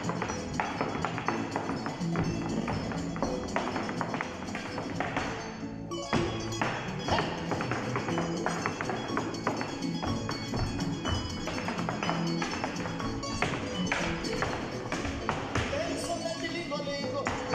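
Zapateado footwork: heeled dance boots striking the stage floor in quick rhythmic taps over Mexican folk music. The music drops out briefly about six seconds in.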